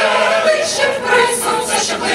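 Mixed choir of women's and men's voices singing, a continuous melodic line under a conductor's direction.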